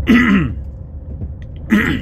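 A man clearing his throat twice, once just after the start and again near the end, over the low steady drone of the van's engine and road noise in the cab. He is getting over a cold.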